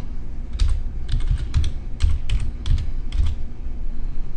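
Computer keyboard being typed on: a short word entered key by key, about ten clicks at an uneven pace, starting about half a second in and stopping a little after three seconds.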